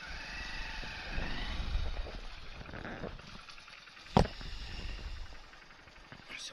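Motorcycle running low as it comes to a stop, with a wavering high whine in the first second or so and a single sharp click about four seconds in.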